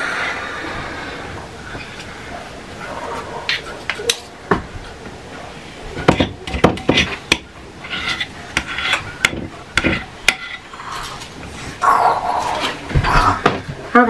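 A spoon scraping and clinking against a mixing bowl as the last of the pumpkin muffin batter is scooped out, with several sharp knocks.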